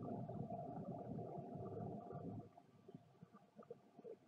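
Low rumbling background hum with a faint steady tone, which cuts off about two and a half seconds in, leaving only faint room noise.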